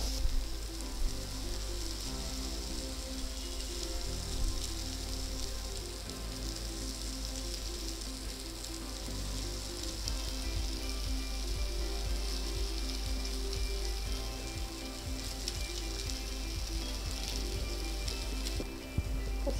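Steady sizzle of grated raw mango and spices frying in oil in a kadai on a gas stove. Soft background music with held low notes plays underneath.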